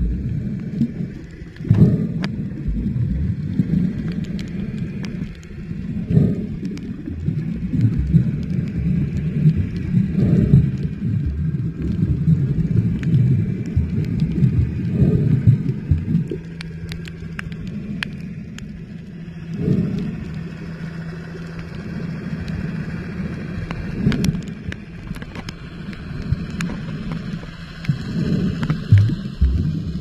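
Low underwater rumble of water moving around a camera filming while swimming, swelling about every four to five seconds, with scattered faint clicks.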